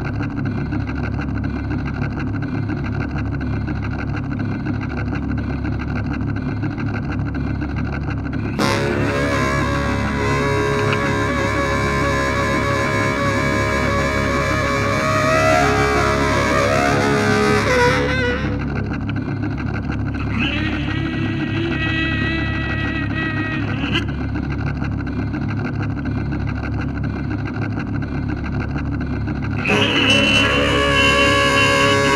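Free improvisation for baritone saxophone and daxophone: sustained, droning textures over a low pulsing drone. About nine seconds in the sound turns abruptly brighter and denser with layered pitches, then drops back to the thinner drone at around eighteen seconds.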